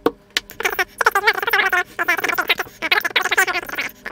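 Hard plastic housing of a piezoelectric dosimeter charger squeaking in runs of rapid, wavering squeals as it is gripped and worked by hand.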